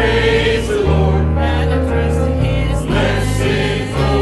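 Church choir singing a hymn with instrumental accompaniment, sustained bass notes that change every second or so.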